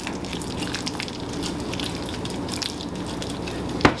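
Softened butter being mixed with sautéed garlic and bell peppers in a glass bowl: steady soft wet squishing with many small clicks of the utensil, and a sharper knock against the bowl near the end.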